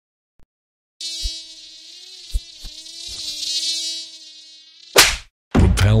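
A flying insect buzzing, starting about a second in and wavering slightly in pitch for about four seconds. It is cut off near the end by a short, sharp hiss.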